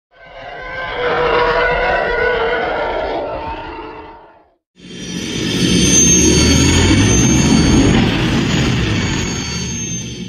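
Sci-fi spaceship sound effect for a logo intro: two separate passes that each swell up and fade away. The second is longer and louder, with a deep rumble under a high, steady whine.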